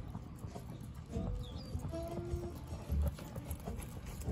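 Hoofbeats of a horse loping on soft arena sand: dull thuds in an uneven rolling rhythm.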